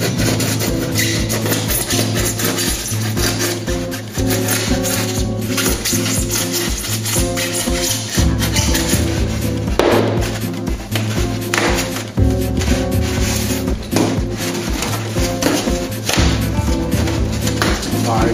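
Background music with a steady bass line throughout.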